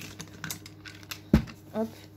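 Small clicks and taps of make-up brushes and a highlighter palette being handled, with one sharp, louder knock a little over a second in.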